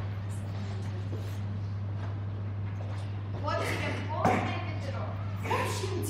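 Indistinct young voices speaking in a reverberant hall over a steady low hum, with one sharp knock a little after four seconds in.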